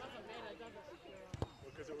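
Several voices calling out at once, overlapping, with a single short thump about one and a half seconds in.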